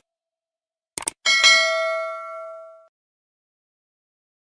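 Sound effect of a subscribe-button animation: two quick mouse clicks about a second in, then a bright notification-bell ding that rings and fades over about a second and a half.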